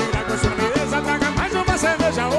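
Live forró band music with a steady, even drum beat and a melody line over it.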